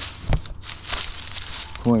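Dry pampas grass stalks rustling and crackling as gloved hands work a rope around the tied bundle, after a short low thump about a third of a second in.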